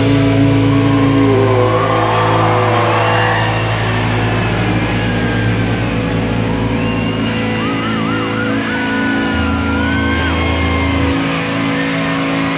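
Live rock band holding a distorted final chord that rings out steadily, with a wavering high guitar note in the second half and a low bass note that comes in and drops out near the end.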